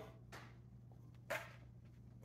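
Quiet room with a steady low hum, broken by a faint brush about a third of a second in and a short sharp rustle a little over a second in: hands taking hold of a plastic hard hat on the head.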